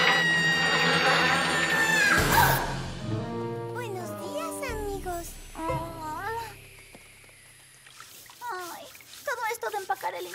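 Cartoon soundtrack: a loud held musical note for about the first two seconds, cutting off abruptly, then wordless character vocal sounds with light background music.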